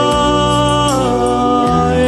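A man singing a song live, holding a long note that steps down in pitch about a second in, over a steady backing accompaniment with a bass line that changes note near the end.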